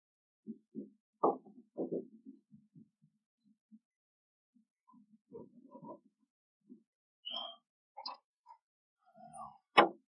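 Scattered light knocks and rattles of hands handling wiring and plastic parts around the convertible top-flap motor. A single sharp click near the end is the loudest sound.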